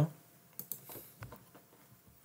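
A few faint, scattered clicks from computer input during a pause in narration.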